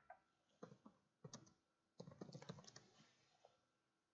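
Faint computer keyboard typing in three short runs of keystrokes, the longest about two seconds in.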